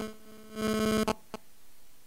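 Electrical interference buzz picked up by the microphone: a steady pitched hum pulsing rapidly. It cuts off about a second in, followed by two clicks.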